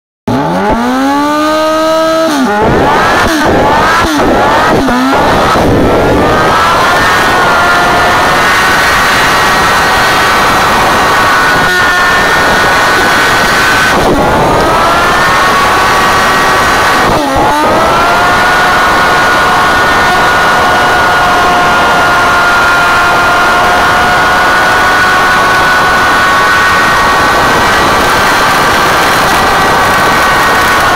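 Honda CBR Fireblade's inline-four engine revved in a few quick rises and falls, then held at high revs through a long burnout with the rear tyre spinning on the pad. The revs dip briefly twice near the middle, then hold steady again.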